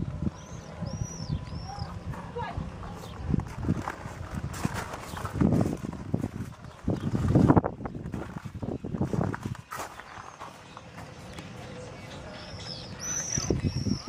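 Outdoor ambience: a bird gives a few short, arched high chirps near the start and several more near the end, over indistinct voices and irregular low rumbling and knocking noise.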